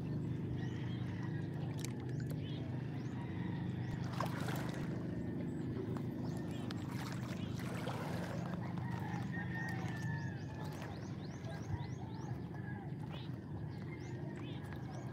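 Small waves washing in and lapping among the rocks of a stony shore, with scattered little splashes and trickles over a steady low hum that eases a little near the end.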